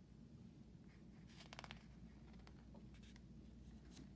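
Near silence: faint room tone with a few faint, soft clicks and rustles, most of them about one and a half seconds in.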